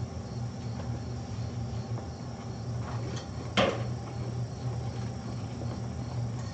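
Steady low hum of room machinery, with one sharp knock or clatter about three and a half seconds in and a faint tick shortly before it.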